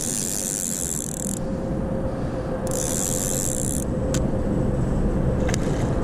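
Spinning reel being cranked as a hooked fish is reeled in toward the boat, over a steady low rumble and a faint steady hum. A high hiss lasting about a second comes at the start and again about halfway through.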